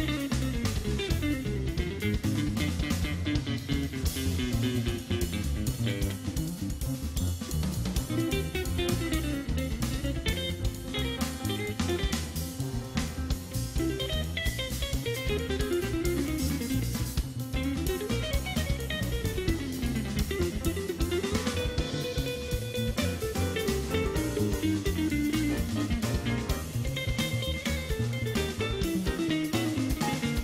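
Live jazz quartet: an electric guitar solos in fast runs over drum kit and bass.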